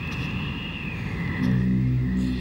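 Film soundtrack: a low rumbling noise with a faint high tone, joined about one and a half seconds in by a low, steady held tone.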